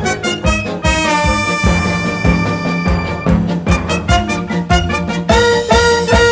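Theatre orchestra playing an instrumental passage of a musical number: brass over a steady, punchy rhythmic beat. About a second in, a chord is held for about two seconds before the rhythmic figures return.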